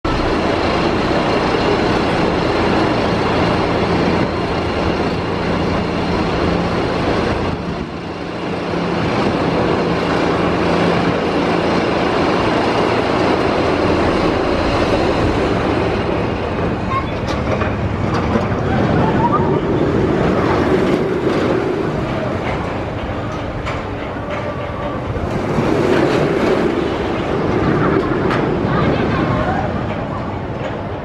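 Maurer SkyLoop steel roller coaster train and chain lift: a steady mechanical hum and rattle for the first seven seconds or so, then the train rumbling and clattering along the track. Riders' voices rise over it in the second half.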